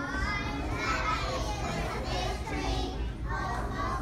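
A group of young children singing a song together, their voices holding and sliding between notes.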